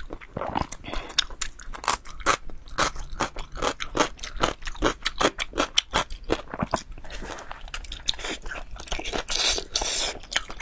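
Close-miked chewing and mouth sounds of soft, sauce-coated braised pig intestine: a dense, irregular run of wet smacks, sticky clicks and squelches as it is bitten and chewed.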